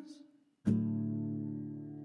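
A sung note trails away, then a single guitar chord is strummed about two-thirds of a second in and rings on, slowly fading.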